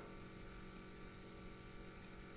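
Near silence: a faint, steady hiss with a low hum underneath, the room tone of the recording.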